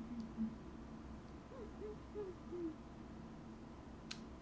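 A young woman's soft closed-mouth hums, short 'mm' sounds: one trails off just after the start, then four more come in a row around the middle.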